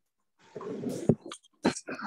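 A person laughing: a breathy stretch, then a few short bursts of laughter near the end.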